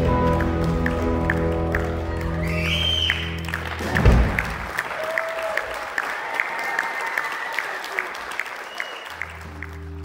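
Electric band holding a final sustained chord, ending with a loud hit about four seconds in, followed by audience applause that gradually thins out.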